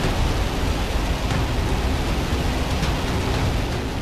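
Ballistic missile's rocket engine at liftoff: a steady, dense rushing noise, heaviest in the lows.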